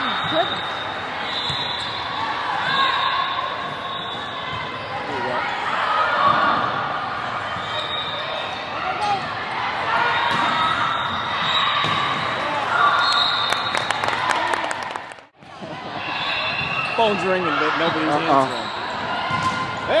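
Indoor volleyball rally in an echoing gym: the ball being struck and hitting the court, players' shoes on the court, and players and spectators calling out. The sound drops out briefly about three-quarters of the way through.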